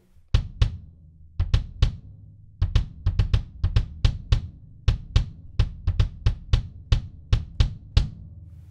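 A 23-inch DW Collector's Purpleheart kick drum (18x23, Remo Powerstroke 4 front head, light pillow dampening inside) played alone with the snare wires off: a quick, uneven pattern of about two dozen beater strokes, some in fast pairs, each a big low thump with a sharp click on top.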